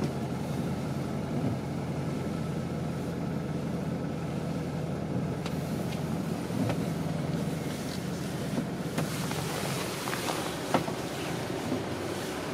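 Tour bus engine running steadily, a low hum heard from inside the cabin, with a few light clicks in the last few seconds.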